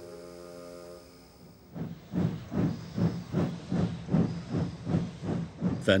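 Steam locomotive chuffing steadily, a hissing puff about two to three times a second, starting about two seconds in. Before it, a held music chord fades out.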